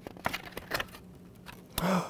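Pages of a picture book being turned: a run of light paper rustles and crisp clicks, followed by a short gasp just before the end.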